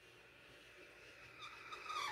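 Black marker tip squeaking faintly as it is drawn across paper to fill in a shape, growing louder in the second half.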